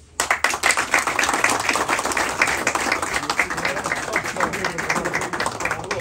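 Audience applause that starts suddenly just after the start, carries on steadily, and thins out at the end.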